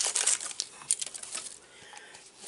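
Plastic packaging of a blind-pack mini figure crinkling and crackling as it is handled and opened, a quick run of crackles that thins out about a second in.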